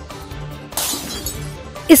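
Breaking-news background music, with a sudden short shattering sound effect about three-quarters of a second in, then the voice of a news reader starting at the very end.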